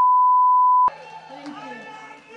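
A loud, steady 1 kHz reference test tone, the kind that accompanies colour bars, that cuts off abruptly about a second in. It is followed by a much quieter murmur of crowd voices.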